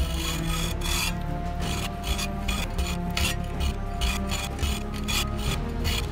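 Hand hacksaw with a bi-metal blade cutting through a twisted steel pipe, in quick, even back-and-forth strokes.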